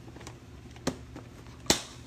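Three sharp clicks, a few tenths of a second to most of a second apart, the last and loudest near the end, over a faint steady low hum.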